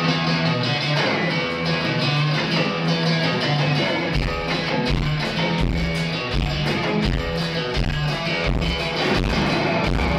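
Live amplified music: an electric guitar and an acoustic guitar playing together. A low, regular thudding beat comes in about four seconds in.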